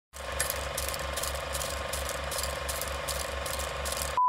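Sound effect of an old film projector running: a steady mechanical clatter with evenly spaced clicks a few times a second over a pulsing low rumble.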